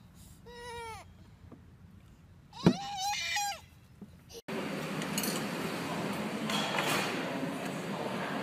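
A toddler's voice: two short, high-pitched, wavering cries, about half a second in and again about two and a half seconds in, the second louder. About four and a half seconds in they give way suddenly to a steady hiss of background noise.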